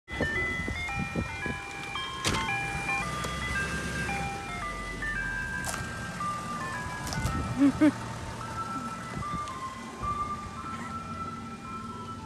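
Ice cream truck playing its electronic chime melody from a loudspeaker as it drives slowly past, its engine running low underneath.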